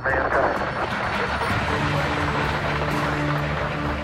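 Neil Armstrong's voice says 'man' over a crackly Apollo 11 radio link from the Moon, then a steady hiss of radio static and noise carries on, with a low steady hum joining about two seconds in.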